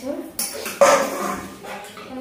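Stainless steel dishes clattering as a plate and bowl are handled, with a sharp clank a little under a second in that is the loudest sound.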